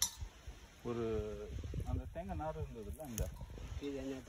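A man speaking Tamil for about two seconds, starting about a second in, over a low rumble.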